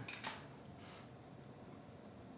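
Mostly quiet room tone, with two brief short sounds near the start as a loaded barbell is picked up off the floor.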